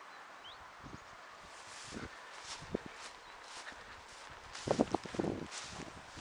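Footsteps of a person walking on rough outdoor ground, irregular steps about one a second, with a louder cluster of sounds about five seconds in.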